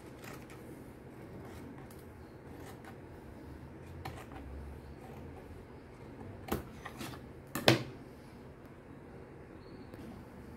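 Scissors cutting a strip of gingham fabric on a tabletop: a few quiet snips, with two sharper clicks later on, the second one the loudest.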